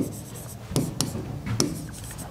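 Chalk writing on a blackboard: a quick series of short taps and scrapes as letters are written, with brief gaps between strokes.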